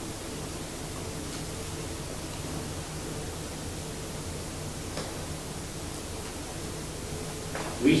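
Steady room tone: an even hiss with a low, steady hum, and a faint click about five seconds in. A man's voice starts just at the end.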